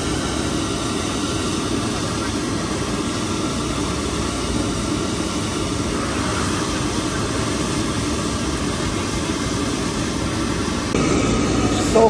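Steady outdoor street noise: a low, even engine-like rumble of traffic, growing slightly louder near the end.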